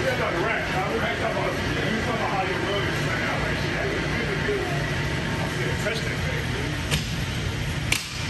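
Steel doors of a large powder-coating oven being swung shut, ending in two sharp metallic clacks about a second apart near the end. Under it, a steady low rumble and indistinct voices.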